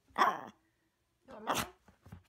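Maltese puppy 'talking': two short yowl-like vocal sounds, the first falling in pitch, the second about a second later.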